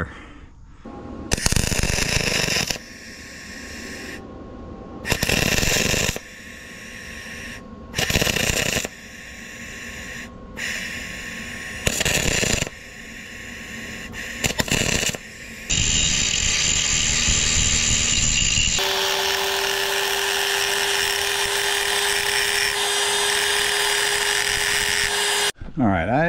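Short bursts of wire-feed welding, each about a second long, laying weld onto the worn splines of an excavator swing motor's output shaft to build them up. Near the end a power grinder runs steadily with a constant whine, grinding the weld back down.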